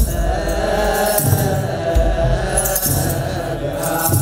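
Orthodox Tewahedo clergy chanting together in long held notes, over deep beats of a kebero drum and the jingle of hand-held sistrums.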